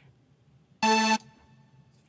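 A single short, bright synthesizer note from a Serum software-synth preset, sounding for about a third of a second about a second in. It is one steady pitch rich in overtones: a preset being auditioned while browsing a sound bank.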